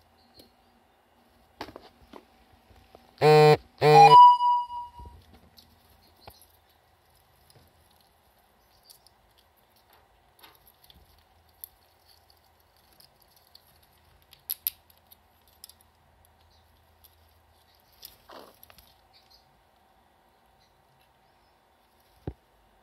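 Pet squirrel digging in potting soil and handling hazelnuts: faint, scattered scratching and clicking. About three seconds in, two short, loud pitched calls close to the microphone, then a brief high tone.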